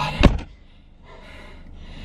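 A car door slammed shut once, a single sharp heavy thud about a quarter second in.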